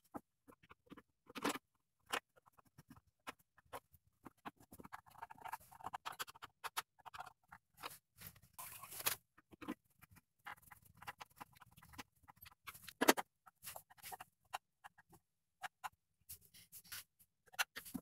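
Screwdriver turning screws into an exercise bike's plastic side cover: faint, scattered clicks and scratchy scraping, with a few louder knocks, the sharpest about 13 seconds in.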